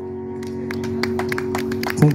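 The final chord of a song held on a Yamaha electronic keyboard, sustained and slowly fading. About half a second in, scattered hand claps begin and quickly thicken into applause.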